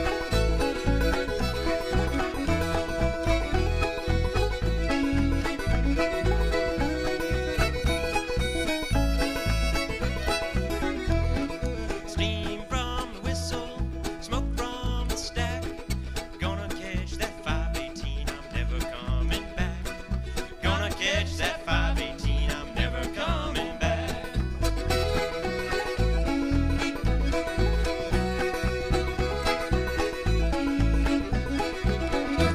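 Old-time string band playing an instrumental break: clawhammer banjo, fiddle, button accordion and upright bass over a steady, regular bass beat.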